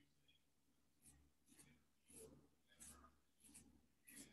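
Near silence, with a few faint, short scratches of a pencil on paper.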